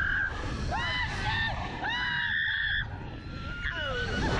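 Two riders on a reverse-bungee slingshot ride screaming and shrieking with laughter in short rising-and-falling cries, with one long high scream held just under a second about halfway through, over a steady wind rumble on the onboard microphone.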